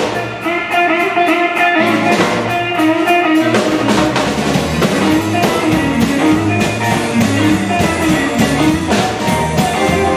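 Live blues band playing loud instrumental music: Stratocaster-style electric guitars over drum kit and bass guitar. The bass drops out for the first few seconds and then comes back in.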